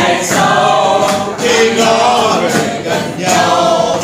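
A group of people singing a Vietnamese bolero song together, accompanied by an acoustic guitar.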